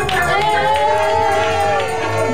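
Church congregation shouting and singing over music with a low beat, the voices rising and falling in long calls.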